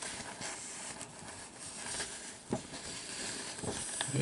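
Low hiss with light rustling of a printed paper sheet being handled by gloved hands, and one sharp click about two and a half seconds in.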